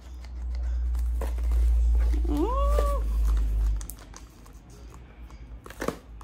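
A low rumble for the first four seconds or so, with one short call about halfway through that rises in pitch, holds and falls, and a few faint crinkles from small gift-wrapped packages being handled.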